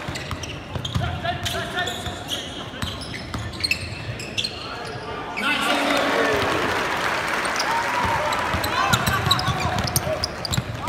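A basketball being dribbled on a hardwood court, with short high sneaker squeaks and players' shouts echoing in a large gym. The voices swell louder about halfway through.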